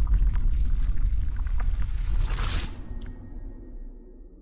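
Sound-design sting for an animated logo intro: a deep bass rumble with scattered crackles, a bright hissing swell about two and a half seconds in, then fading away.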